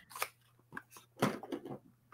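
A few short, quiet clicks and rustles of a cardboard product box being picked up and handled, the loudest about a second and a quarter in, with a single spoken syllable around the same time.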